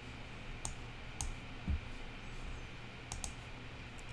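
A few faint, irregularly spaced computer mouse clicks over a steady low hum, with one soft low thump about halfway through.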